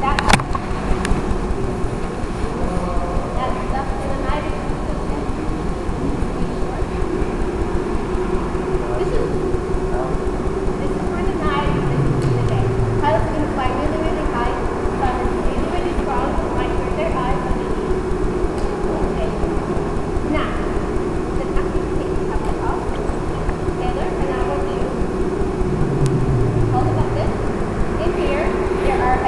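Indistinct voices of people talking over a steady low hum.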